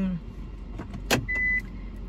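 Inside a car, a single sharp click about a second in, followed by a brief high beep, over a low steady hum.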